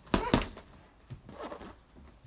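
Two gloved punches landing on a hanging heavy bag in quick succession right at the start, about a fifth of a second apart, then only faint movement sounds.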